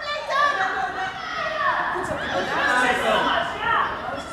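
Young children's voices shouting and calling out to each other during a youth football match, several overlapping, high-pitched and continuous.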